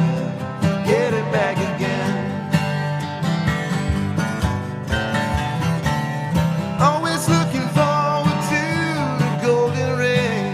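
A live acoustic band playing an instrumental stretch of a country-folk song: guitars strummed over a steady low chordal bed, with a wavering melody line above them that swells in pitch several times.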